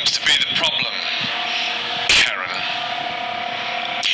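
Soundtrack of a comedy sketch: brief voice sounds, then a loud whoosh about two seconds in, followed by a steady held tone.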